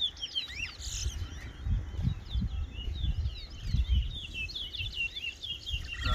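Caged towa-towa (chestnut-bellied seed finch) singing: a continuous fast run of high chirped and whistled notes that slide up and down.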